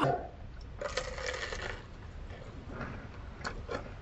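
Quiet chewing of a crisp peach mango pie, with a soft crunching patch about a second in and a few faint mouth clicks near the end.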